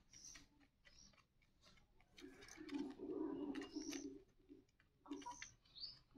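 Quiet bird calls: a low, cooing call of about two seconds in the middle, with short high chirps scattered before and after it.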